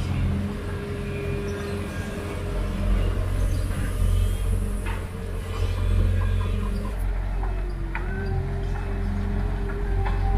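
Diesel engine of a Sumitomo SH210 amphibious excavator running steadily at close range, a deep hum with a steady higher whine that dips briefly and comes back near the end.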